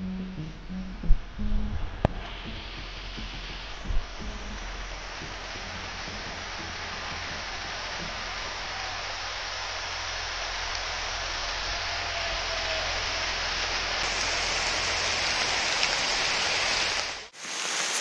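Steady hiss of rain, mixed with small ice pellets, falling on forest foliage and growing slowly louder, over a low rumble. Guitar music fades out in the first couple of seconds, and there are a few soft thumps near the start.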